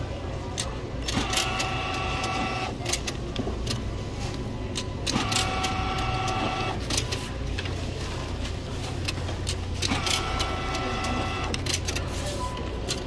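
Self-checkout bill acceptor's motor whirring three times, about a second and a half each, as it draws in dollar bills one at a time. The whirs start about one, five and ten seconds in, with small clicks and a steady low hum throughout.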